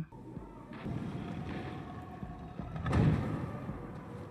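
TV drama soundtrack: a low rumbling score with music, swelling to its loudest about three seconds in, then easing off.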